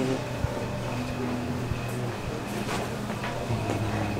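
Restaurant room tone: a steady low hum with a few faint clicks scattered through the second half.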